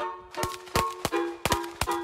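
Background music of short, quickly fading pitched notes in a bouncy rhythm, about three notes a second, each starting with a sharp click.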